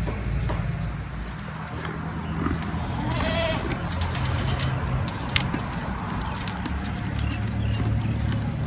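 A goat bleats once, a wavering call about three seconds in, over a steady low motor hum. Two sharp clicks come later.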